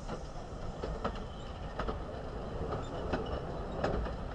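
Ffestiniog Railway narrow-gauge steam train rolling slowly past, its locomotive and small carriages running on over a low rumble. Sharp wheel clicks over the rail joints come about every half-second to second.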